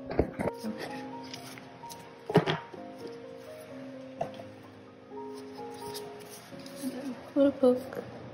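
Soft background piano music with held notes, over the handling of a cardboard K-pop album and its photobook on a table. The loudest sound is a knock about two seconds in, and a few more sharp knocks and rustles come near the end.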